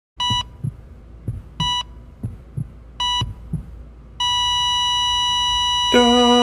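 Hospital heart monitor beeping three times about 1.4 seconds apart, with soft low heartbeat thumps, then about four seconds in going into a steady flatline tone. The tone is pitched on a B, the monitor's sign of the heart stopping.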